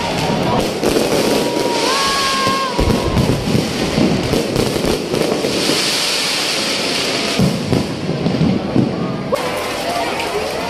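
An aerial fireworks display going off close by: a dense run of bangs, with stretches of crackling hiss from the bursting shells.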